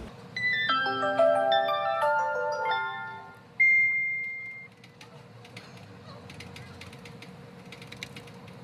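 A short electronic jingle of overlapping stepped notes, then a single high beep that fades away. Soft mouse and keyboard clicks follow near the end.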